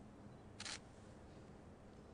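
Near silence with a single short, sharp click a little over half a second in.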